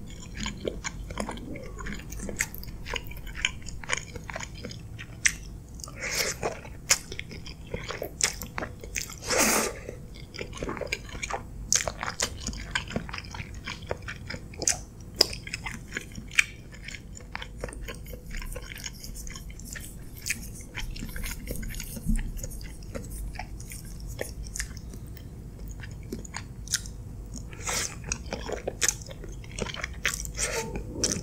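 Close-miked chewing of creamy pasta with chicken: wet mouth clicks and smacks throughout, with a louder, longer noisy burst about nine and a half seconds in.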